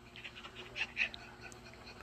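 A dog making a few soft, short high-pitched sounds.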